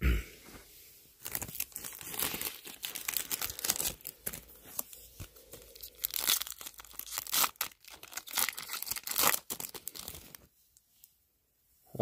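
Trading card pack wrapper being torn open and crinkled: a soft thump at the start, then about nine seconds of busy tearing and crackling that stops a second or two before the end.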